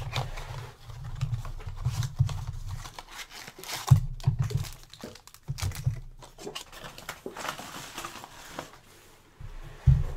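Cardboard trading-card blaster box being torn open by hand, with the plastic-wrapped card packs crinkling as they are pulled out and set down. Irregular rustling and tearing with scattered thumps, the loudest about four seconds in.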